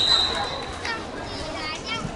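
A sports whistle blows one steady, high blast of about half a second right at the start, followed by children's voices calling out.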